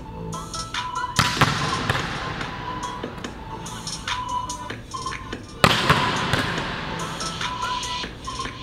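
Volleyball smacked hard twice in quick pairs, once about a second in and again a little past halfway, each sharp hit echoing in a large hall, over steady background music.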